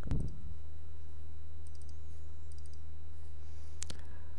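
Two computer mouse clicks, one right at the start and one just before the end, with a few faint ticks between, over a steady low electrical hum.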